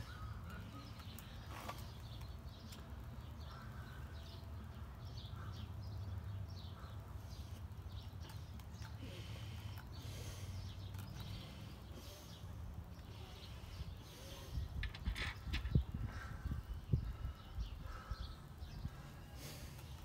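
Outdoor background of birds calling over a steady low rumble, with a run of knocks and clicks in the last quarter as metal wheel-bearing hardware is handled and fitted onto a drum-brake hub.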